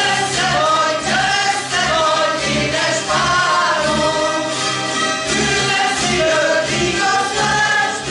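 A Hungarian citera (board zither) ensemble strumming a folk tune together, with voices singing the melody in unison.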